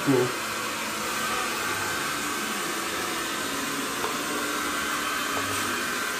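Small handheld hair dryer blowing steadily, drying the freshly screen-printed ink on a T-shirt.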